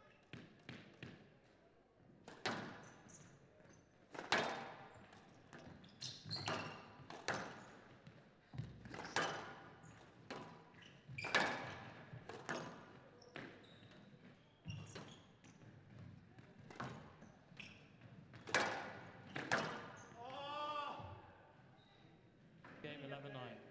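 Squash rally: the ball is struck by rackets and smacks off the front and glass walls in sharp, echoing hits about every half second to second. Near the end a voice is heard as the rally stops.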